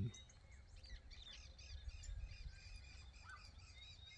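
Small songbirds chirping faintly at a feeder, with many short high notes in quick succession over a low outdoor rumble.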